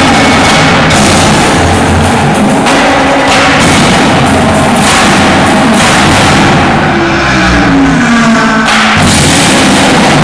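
Indoor percussion ensemble playing loudly: marching snare, tenor and bass drums over a front ensemble of marimbas and other mallet and keyboard instruments. A falling pitched line sounds about seven seconds in, and the texture changes abruptly near the end.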